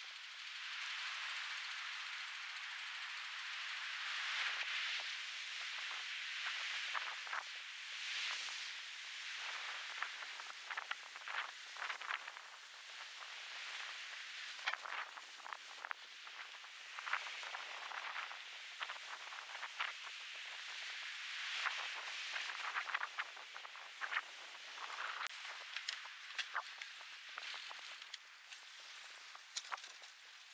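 Wind blowing through pine trees and scrub, a steady hiss of needles and branches rustling that swells and eases in gusts, with many small crackles and ticks.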